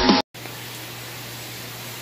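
Strummed guitar music that cuts off a quarter second in, followed by a brief dead gap and then steady room noise: an even hiss with a low, steady hum.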